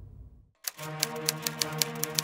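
Soft background music fades out into a brief silence. Then a typewriter sound effect begins over a steady low drone: sharp, irregularly spaced key strikes, four of them in the second half.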